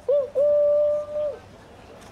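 A voice drawing out one high held note for about a second after a short syllable, dropping away at the end, like the drawn-out tail of a chanted hype line.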